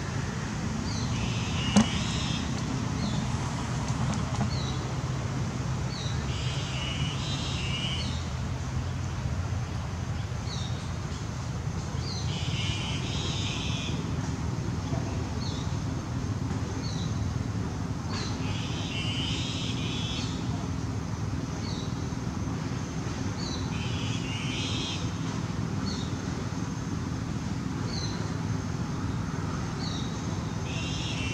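Outdoor background: a steady low motor hum, with a bird calling in short high phrases that repeat about every six seconds. There is one sharp click about two seconds in.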